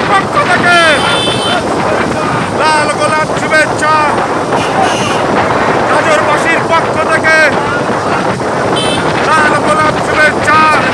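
Men shouting loudly in repeated calls over the steady noise of motorcycle engines and wind rushing on the microphone.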